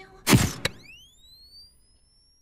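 Sound-effect sting: a sharp hit followed by a second click, then a whistle-like tone that glides upward and fades away.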